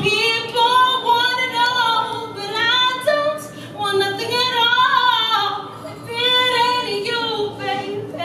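A woman singing unaccompanied into a microphone: long drawn-out, bending notes with vibrato, in about three phrases with short breaths between them.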